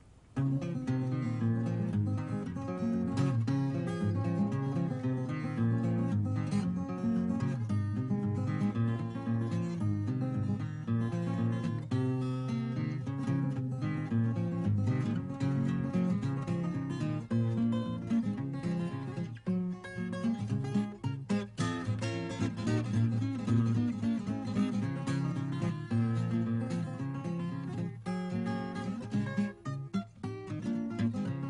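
Acoustic guitar instrumental, a busy run of quickly picked notes that begins just after the opening moment.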